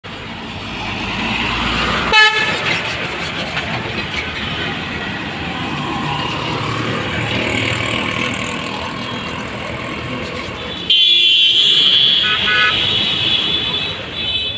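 Busy road traffic with vehicle horns: a short horn toot about two seconds in, then a sudden, much louder stretch of horn honking from about eleven seconds.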